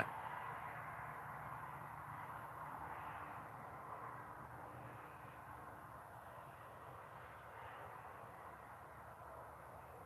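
Faint, steady outdoor background noise, a soft hiss with a low hum under it, slowly fading over the stretch.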